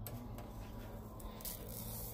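Faint steady low electrical hum over quiet room noise. No degaussing thump or buzz from the CRT TV is heard.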